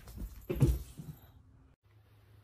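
A cat's brief call about half a second in.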